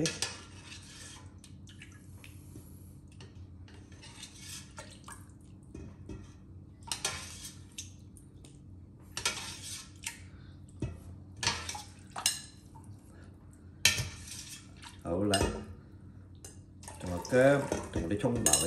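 A fine-mesh skimmer fishing scallions and ginger out of stock in a stainless steel stockpot, in a series of short separate clinks, scrapes and splashes every second or two as metal knocks on the pot and plate and stock drips back. A faint steady low hum runs underneath.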